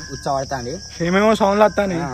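A man talking, with crickets chirping steadily in the background.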